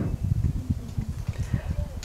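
Low, irregular thumps and rumble from a handheld microphone held close to the mouth in a pause between sentences: handling noise and breath on the mic.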